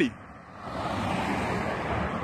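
Road traffic: the engine and tyre noise of a passing vehicle swells about half a second in and then holds steady.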